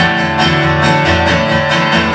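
Steel-string acoustic guitar strummed in a steady rhythm, about four strokes a second, with the chord ringing between strokes.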